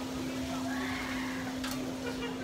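A steady hum held at one pitch, with a brief sharp click near the end.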